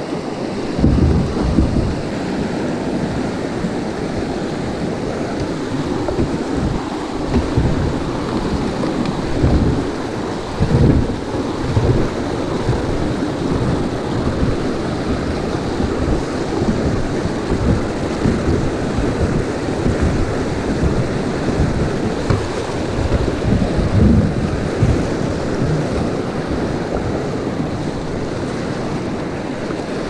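Rushing whitewater of a river rapid around a kayak running through it, with irregular deep thumps and rumbles throughout, the strongest about a second in, around eleven seconds in and near twenty-four seconds in.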